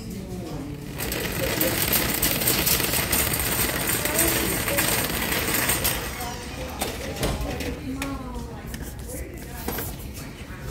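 Metal shopping cart rattling loudly as it is pushed across a hard store floor, starting about a second in and easing off after about five seconds.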